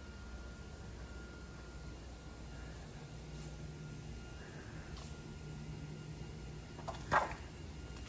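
Quiet room tone with a steady low hum and a faint high whine, broken by a short sharp clack about seven seconds in.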